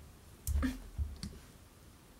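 A few short clicks and knocks, about half a second in and again around a second in: a red-and-white handled pointed crafting tool being put down on a wooden tabletop while twine is handled.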